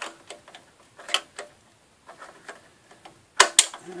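Needle-nose pliers clicking against the new on/off switch's locking nut as it is tightened on a Shopsmith Mark V. Irregular sharp ticks, with a louder cluster of clicks near the end.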